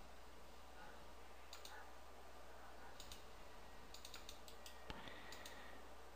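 Faint, scattered clicks of a computer mouse and keyboard, several in quick pairs, over a low steady hum.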